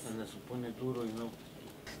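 Quiet conversational speech, a few soft murmured words, trailing off after about a second and a half.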